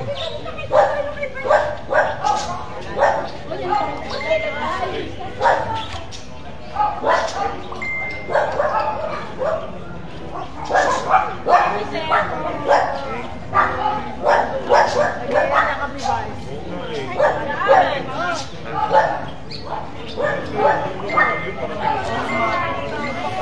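Voices of a crowd talking in a street, with a dog barking in short repeated bursts throughout.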